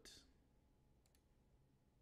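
Near silence with two faint computer mouse clicks in quick succession about a second in.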